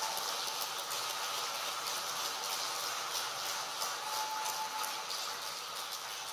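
Audience applauding: a dense, steady mass of hand claps.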